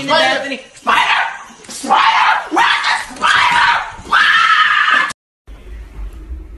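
A French bulldog letting out about five loud, drawn-out high-pitched cries in a row, each under a second long, which cut off suddenly about five seconds in.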